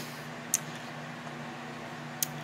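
A steady low hum of room background, with one short sharp click about half a second in.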